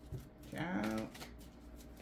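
A deck of tarot-style cards being handled and shuffled, soft card clicks and rustles, with a woman's brief hum about half a second in.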